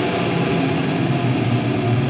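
Heavy metal band playing a dense passage: a wall of distorted electric guitar and cymbals with hardly any clear melody line.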